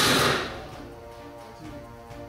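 The fading end of a loud, harsh noise from a test dummy's fall being caught by a shock-absorbing lanyard clipped to a full-body harness's front web loop; it dies away about half a second in. Background music with steady held tones runs throughout.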